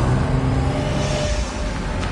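Police cars driving up fast, with steady engine and tyre noise on wet pavement.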